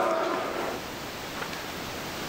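Steady hiss of room noise in a large reverberant church. A voice's echo dies away in the first moment.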